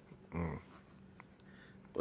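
A single brief vocal sound from a person, lasting about a quarter second and coming a third of a second in. After it comes quiet studio room tone with a faint steady hum.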